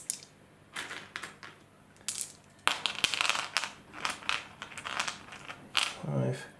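A handful of dice clicking together as they are shaken in the hand and rolled out onto a gaming mat. The clatter comes in scattered clicks, densest about three seconds in.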